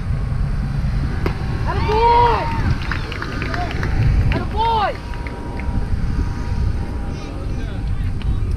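Two long, drawn-out shouted calls, from players or fans at a youth baseball game, about two seconds in and again near the middle. A steady low rumble of wind on the microphone runs throughout, and there is a single sharp knock just after a second in.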